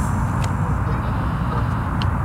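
Steady low outdoor rumble, with one faint click about half a second in.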